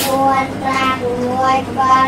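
Children's voices chanting a lesson aloud together in a sing-song recitation, a run of short held notes one after another. A sharp click comes right at the start.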